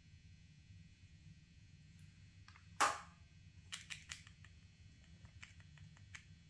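Small plastic clicks and taps from makeup items being handled: one sharp click about three seconds in, then a quick run of lighter clicks and a few more scattered taps near the end.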